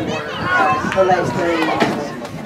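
People talking close to the microphone in ongoing conversation.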